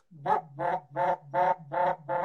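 Canada goose call blown in a steady run of short, evenly spaced low notes, about five in two seconds: a tempo note, the one steady note a caller falls back on to keep the rhythm of a calling sequence.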